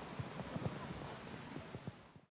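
Faint ambient sound with many soft, irregular low knocks.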